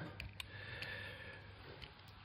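A few faint, scattered clicks as a utility knife blade works at the end of an LED strip light, starting to pry its silicone coating off the copper board.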